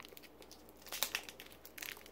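Faint crinkling and a few light clicks of plastic packaging being handled, about a second in and again near the end.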